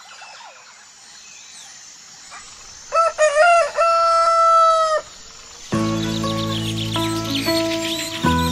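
A rooster crowing once about three seconds in, a broken start rising into one long held note, over faint bird chirping. Background music comes in near the end.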